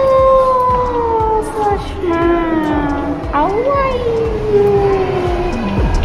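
A high voice holding long, drawn-out wordless notes, each jumping up and then sliding slowly down: two long slides with a shorter, lower note between them.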